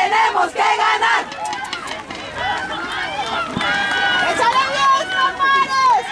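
Crowd of high-pitched voices chanting and shouting encouragement, "¡tenemos que ganar!" ('we have to win'), which breaks up after about a second into mixed overlapping shouts that grow louder near the end.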